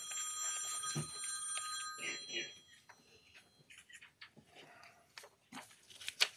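A high ringing tone made of several pitches sounding together, holding steady for about two and a half seconds and then fading out. Faint paper rustling follows.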